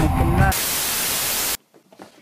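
A burst of white-noise static, like a detuned TV, about a second long, used as a transition sound effect between clips; it cuts off sharply into near silence. The tail of a song with singing is heard just before it.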